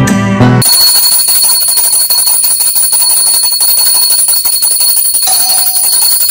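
Small brass puja hand bell rung continuously, a steady high ringing that starts about half a second in, after a short bit of background music.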